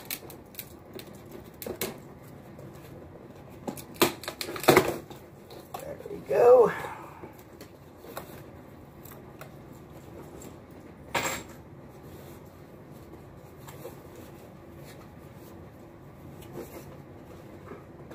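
A cardboard box being handled and worked open, with low rustling and scraping throughout. There are sharp clicks or knocks about four seconds in and again near the middle. A short hummed vocal sound comes about six seconds in.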